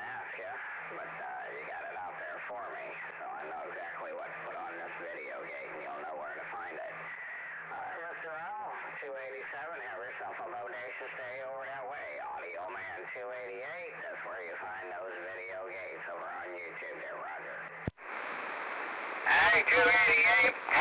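A voice talking over a single-sideband CB radio, thin and narrow-band. About 18 seconds in the transmission drops out with a click. About a second of hiss follows, then a louder, clearer signal comes in.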